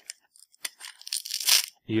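A small stiff paper envelope being handled and pulled apart: a dry crackling, tearing rustle in short bursts, loudest about a second and a half in.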